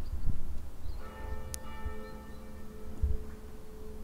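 A bell struck once about a second in, its ring of several overtones slowly fading away.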